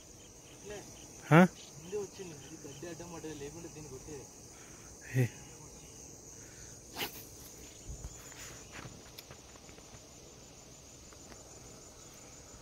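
A steady high-pitched chorus of crickets runs throughout, with a few brief isolated sounds scattered over it.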